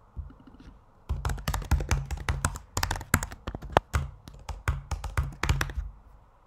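Typing on a computer keyboard: a quick, irregular run of keystrokes starting about a second in, with short pauses between bursts.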